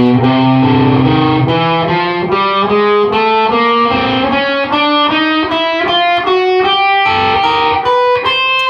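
Electric guitar playing the chromatic one-two-three-four finger exercise: an even stream of single picked notes, four per string, climbing steadily in pitch. Each fretting finger stays down until it is needed again, so notes overlap slightly.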